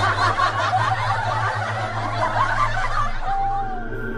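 Continuous laughter, many chuckles overlapping, over a steady low hum. Near the end the laughter thins out and a single falling tone slides in.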